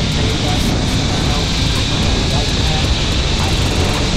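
Steady rush of wind buffeting the microphone while riding a long zip line at speed, mixed with the hum of the trolley's pulleys running along the steel cable.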